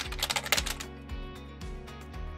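Background music with a computer-keyboard typing sound effect: a quick run of clicks over the first half, easing off after that.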